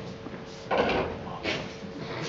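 A sudden sliding scrape about two-thirds of a second in, lasting about half a second, then a shorter one about a second later, over a faint steady hum.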